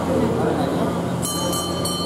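Voices talking in a large hall over a steady low hum. About a second in, a thin, steady high-pitched tone joins.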